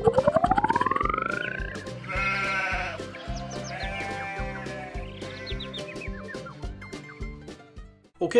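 Cartoon soundtrack: electronic music with a steady beat, fading toward the end. A swooping tone rises steeply over the first two seconds, followed by two drawn-out animal cries about two and four seconds in.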